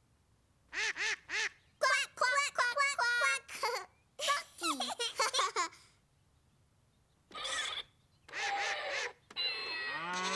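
Small children giggling and squealing in short bursts, mixed with the electronic notes and sound effects of a toy keyboard being played.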